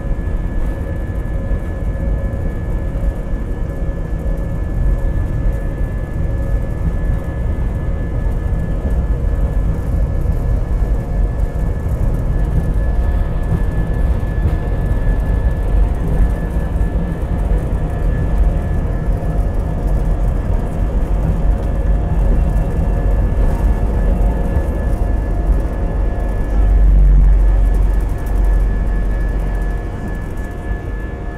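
Jet airliner's takeoff roll heard from inside the cabin: loud steady engine noise with a thin high whine and heavy runway rumble. The rumble grows heavier near the end and then eases as the wheels leave the runway.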